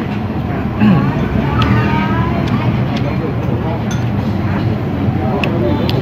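Steady low rumble of street traffic, with indistinct background voices and a few faint clicks.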